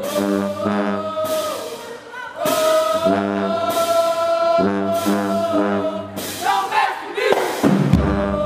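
High school marching band brass section (trombones, trumpets, sousaphones) playing: short, punched repeated chords alternating with long held notes, over drum hits.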